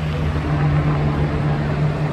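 Street traffic with a vehicle engine running steadily: a loud, even low hum over road noise.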